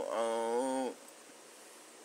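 A drawn-out, steady-pitched vocal call that stops about a second in, leaving faint hiss.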